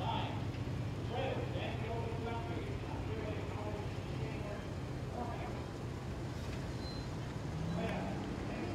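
Engines of slow-rolling Jeep Wranglers running in a steady low hum as they pass in a line, with people's voices talking over it.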